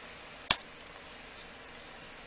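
A single sharp click about half a second in, against quiet room tone.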